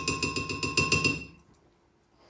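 Metal spoon clinking rapidly against a glass blender jug, the glass ringing with each strike, in a fast even run that stops a little over a second in.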